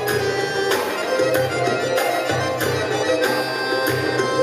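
Live band music in a Middle Eastern style: a long-necked lute and a Korg Pa keyboard play a melody over a pulsing bass and a steady beat of percussive strikes, about three every two seconds.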